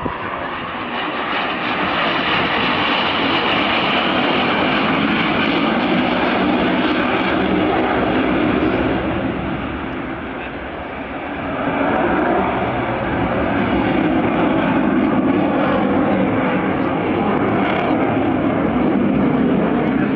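Jet aircraft making a low display pass, its engine noise a loud, steady rush. It builds over the first couple of seconds, eases around ten seconds in, then swells again as it passes.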